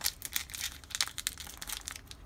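Plastic wrapper of a baseball card pack crinkling as it is peeled open by hand, a quick run of small crackles.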